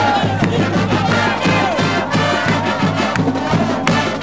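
A marching band of brass and drums playing with a steady beat, while a crowd cheers and shouts over the music.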